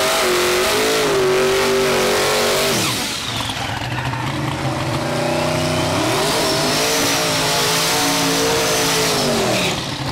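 Drag cars doing burnouts: engines held at high revs with the tyres spinning, revs falling away about three seconds in, then climbing again about six seconds in and held until they drop near the end.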